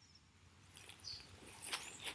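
Quiet outdoor background with a short, faint high bird chirp about a second in, and a soft noisy sound rising near the end.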